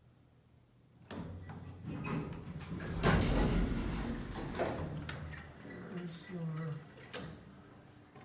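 Circa-1977 Otis hydraulic elevator's sliding doors moving, starting suddenly about a second in and loudest around three seconds in.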